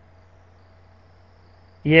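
Faint, steady room tone: a low hum and light hiss with a thin, faint steady tone. A man's voice starts near the end.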